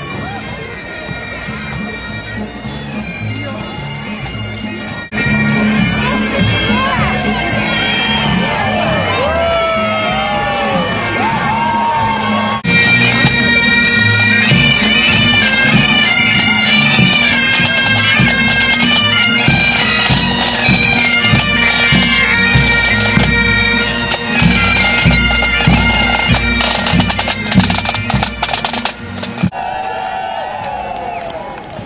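Pipe band bagpipes playing a tune over their steady drone. They get louder about halfway through, where drum beats join in.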